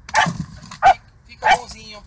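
Small mixed-breed dog, thought to be part beagle, barking three times in short, sharp barks about half a second apart, the last trailing off briefly. This is the defensive barking of a frightened dog being cornered in its doghouse.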